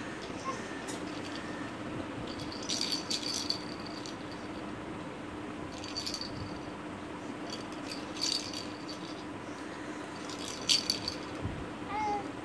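Small red plastic toy rattle (a gilaka) shaken in short bursts every two to three seconds.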